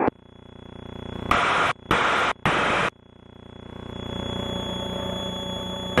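Three short bursts of radio static hiss over the aircraft intercom, a little over a second in, then the T67 Firefly's engine drone growing louder and holding steady, with a faint thin high whine.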